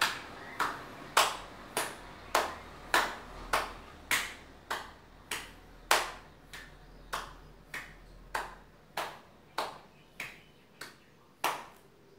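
Hand claps in a steady rhythm, a little under two a second, about twenty in all, as the arms swing together in front of the chest; the clapping stops near the end.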